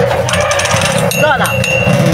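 Homemade Beyblade spinning tops whirring and grinding against each other on a metal dish arena, with a steady high metallic ringing tone setting in about halfway.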